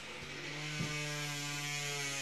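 A steady electric hum with a buzzy edge. It comes in during the first half-second and then holds at one even pitch, with two faint clicks under it.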